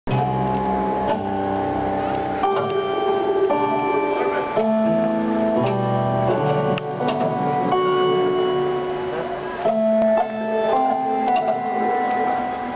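A keyboard instrument playing held notes and chords with an organ-like sustained tone, changing every half second to a second.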